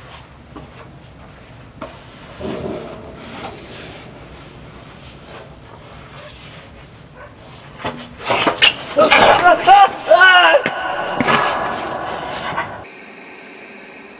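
Loud, shrill screaming with wavering, arching pitch that starts about eight seconds in and lasts about four seconds. It cuts off abruptly into a steady hiss of TV static.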